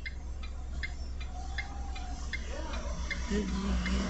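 A car's indicator flasher ticking steadily, about two to three ticks a second, over the low hum of a stationary car.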